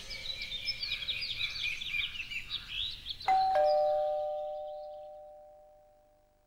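Birds chirping for about three seconds, then a doorbell chime rings its two notes, ding-dong, high then lower, fading away over a couple of seconds.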